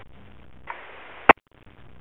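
Radio scanner hiss between two-way radio transmissions, broken by one sharp click a little past halfway, after which the channel drops almost silent for a moment.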